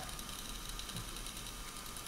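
Steady low hiss of room tone with a faint thin hum and no distinct event.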